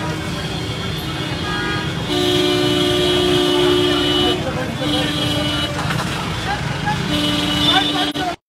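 Vehicle horn sounding in long steady blasts: one of about two seconds, a shorter one, then another near the end, over the chatter of a crowd and street traffic.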